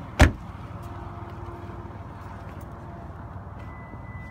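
A Lexus RX 350 door shutting with one loud thud about a quarter second in, followed by steady low background noise and a faint high tone near the end.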